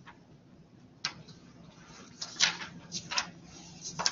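Textbook pages being flipped by hand: several short papery flaps and rustles, one about a second in and a cluster between two and four seconds, the loudest about two and a half seconds in.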